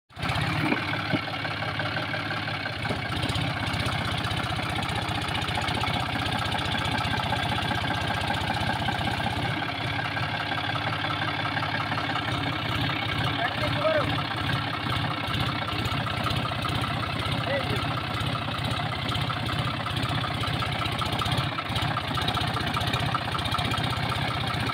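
John Deere 5050D tractor's three-cylinder diesel engine running steadily under load as the tractor strains to climb a muddy bank with its front wheels lifted off the ground.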